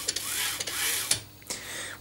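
AxiDraw pen plotter's Y-axis slide pushed back and forth by hand along its steel rails, its cables rubbing as they flex. It gives a soft rubbing hiss with a faint whine that rises and falls twice as the slide speeds up and slows, then a brief quiet moment near the end.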